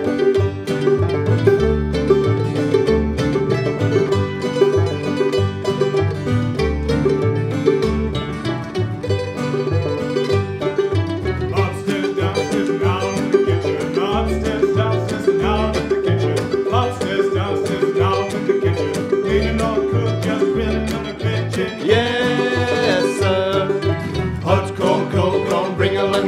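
Old-time string band of double bass, acoustic guitar and banjo playing an up-tempo tune, the bass plucking a steady beat under quick picked banjo notes.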